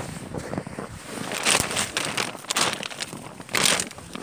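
Plastic bag liner crinkling as it is handled, in irregular rustles with louder bursts about a second and a half in and near the end.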